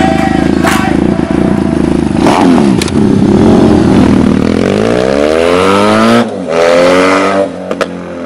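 Benelli Leoncino 500 motorcycle's parallel-twin engine running, dropping in pitch about two seconds in, then revving up twice in rising climbs, each cut off sharply.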